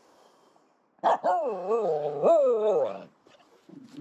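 Finnish Spitz giving a drawn-out vocal "talk", a whining call about two seconds long whose pitch rises and falls. It starts about a second in.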